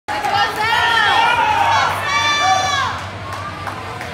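A small group of gymnastics teammates shouting and cheering together with raised, overlapping voices, dying down about three seconds in.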